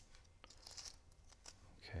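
Faint paper crinkling with a few light ticks as fingers spread the fringed strands of a rolled paper stamen.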